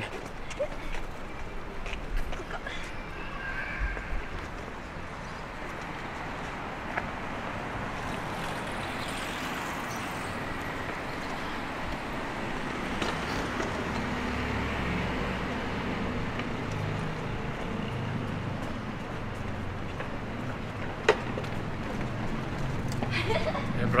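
Steady city street noise with traffic, getting louder with a low rumble in the second half, and one sharp click near the end.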